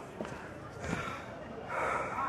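An elderly man gasping and sobbing in short breathy bursts, one about a second in and a louder one near the end.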